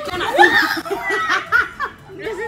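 Several women laughing together: a quick run of repeated ha-ha pulses with a higher, squealing laugh over it, dying down near the end.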